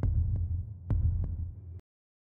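Heartbeat sound effect: deep double thumps, a strong beat followed by a softer one, repeating a little under once a second over a low hum. It cuts off abruptly near the end.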